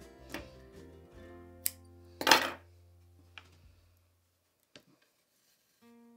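Soft background music with held notes that fades out about four seconds in, with a few light clicks and one brief noisy handling sound about two seconds in, the loudest moment.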